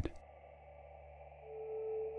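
Quiet room tone, then a single steady held note fades in about three-quarters of the way through: a sustained tone of the ambient background music.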